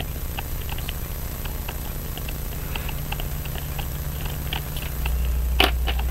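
A small screwdriver backing out the tiny case screw on a Waltham Model 1892 pocket watch movement: faint scattered metal ticks and scrapes, with one sharper click near the end, over a steady low hum.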